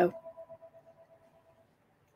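A faint ringing tone, pulsing slightly as it fades away over about a second and a half.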